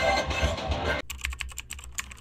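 Film soundtrack music playing in a cinema fades out. About a second in, it cuts to a keyboard-typing sound effect: rapid key clicks, about ten a second.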